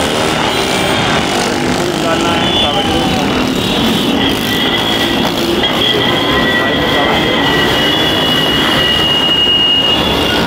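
Busy road-junction traffic: motorcycle, scooter and car engines passing in a steady din with voices in the crowd. From about halfway, high steady tones are held for several seconds over the traffic.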